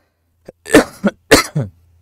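A man coughing several times in quick succession.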